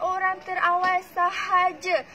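A woman's voice in drawn-out, sing-song phrases, each pitch held for about half a second.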